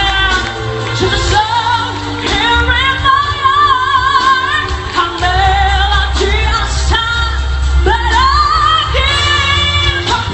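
A woman singing a pop song live over backing music, holding long notes with vibrato, with a steady bass underneath.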